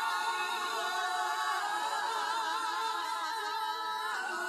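Female backing singers holding sustained notes in close harmony with vibrato, shifting to new notes about one and a half seconds in. The vocals are isolated by software from the full band mix.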